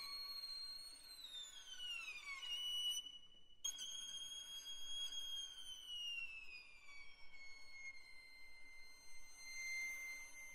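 Solo violin playing quietly in a very high register: a slow downward glissando that holds briefly and breaks off about three and a half seconds in, then a second slow slide down that settles on a sustained high note.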